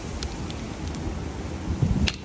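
Steady hiss of wind on the microphone, with a couple of faint clicks as the plastic mini chainsaw is handled.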